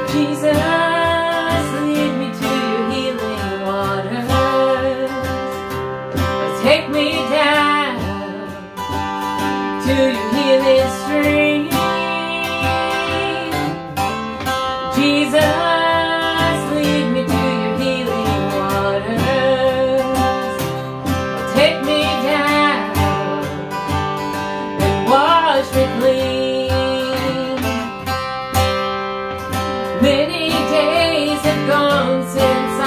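Acoustic guitar strummed steadily as accompaniment while a man and a woman sing a song together.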